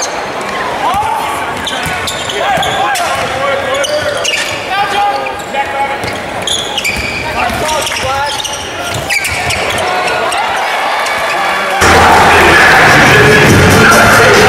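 Live basketball game sound in a large gym: a ball bouncing on the hardwood court and players' voices calling out. About twelve seconds in, it cuts suddenly to loud music with a steady bass beat.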